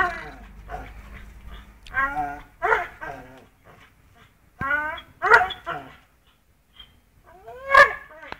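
Pit bull whining in short, high cries that fall in pitch, about five of them, the first four in two pairs and the last near the end, while it grips a hanging rope in its jaws.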